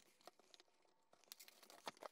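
Near silence with faint papery rustling and a few small clicks as a printed paper sleeve is slid off a cardboard box.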